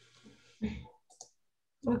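A short pause on a video call with a few soft clicks and a brief faint sound, then a woman starts speaking near the end.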